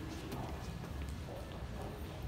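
Low murmur of people's voices with scattered light clicks and taps.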